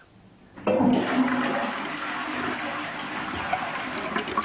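A toilet flushing: after a quiet first half second, a sudden loud rush of water into the bowl starts and runs on steadily.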